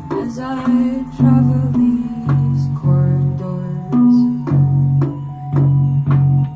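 A woman singing live over her own electric bass guitar, the bass playing low sustained notes that change about every half second to a second beneath the sung melody.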